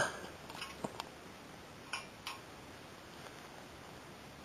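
Faint crackling from small sticks catching fire in a Bushbuddy wood-burning stove: a few sharp ticks, scattered through the first half.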